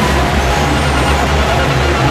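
Loud, steady din of a crowded railway station concourse, with a deep rumble underneath.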